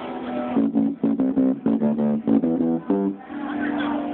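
Electric bass guitar played through an SWR bass amplifier: a quick run of plucked notes for about two and a half seconds, then one held note.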